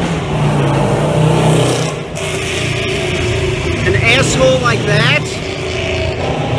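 Loud motor vehicle running on the street, a low steady engine drone with a rushing exhaust noise over it. The exhaust is loud enough that it sounds unmuffled, in the speaker's view.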